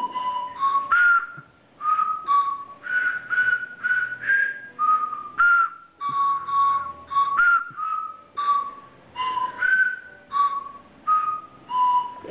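Set of tuned Christmas cracker whistles, several players each blowing one note in turn to pick out a simple tune note by note. The short whistled notes come a few a second and jump up and down in pitch, some held a little longer.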